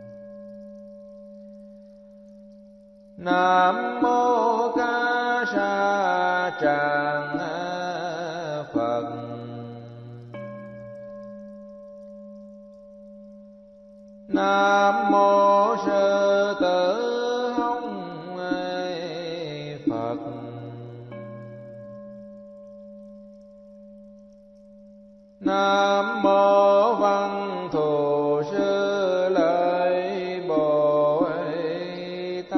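Vietnamese Buddhist chanting set to music: a sung chant phrase comes three times, starting about 3, 14 and 25 seconds in and lasting several seconds each, with steady held tones sounding between the phrases.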